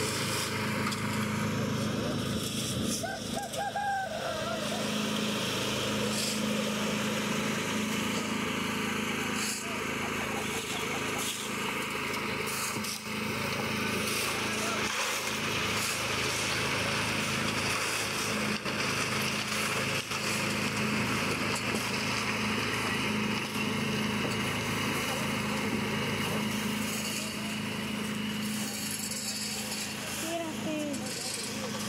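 Small single-cylinder gasoline engine of a portable drum concrete mixer running steadily under load, with occasional knocks and scrapes of shovels and buckets and indistinct voices in the background.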